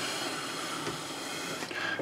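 Steady low background hiss of room noise, with no distinct events.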